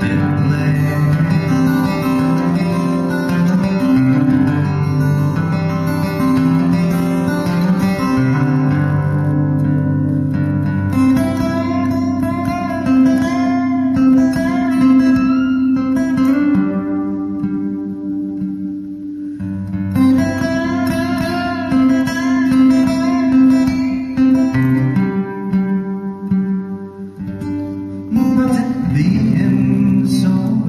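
Solo steel-string acoustic guitar played fingerstyle in an instrumental passage: low bass notes ring under a picked melody. It drops quieter for a couple of seconds past the middle, then builds again.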